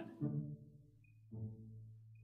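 Quiet background music: faint, low sustained notes in two short swells, with a steady low hum beneath.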